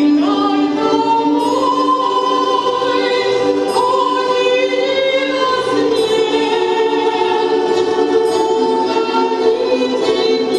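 A woman's solo singing voice through a microphone, holding long sustained notes, sliding up into a higher note at the start.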